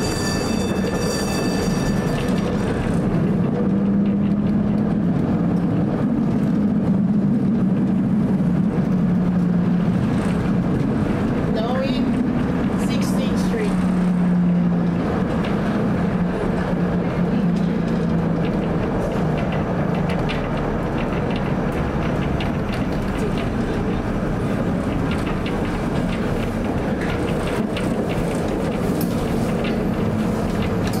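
Historic 1947 PCC streetcar running on its rails: a steady low running hum from the motors and gearing that drifts in pitch as the speed changes. A high wheel squeal sounds in the first two seconds, and a brief rising whine about twelve seconds in.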